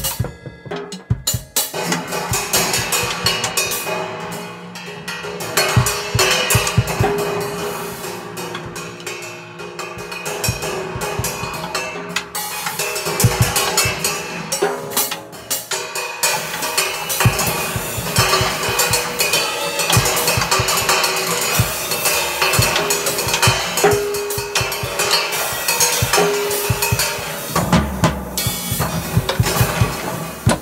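Acoustic drum kit played with wooden sticks: a busy, continuous pattern of drum strokes that picks up again after a brief lull in the first second or so.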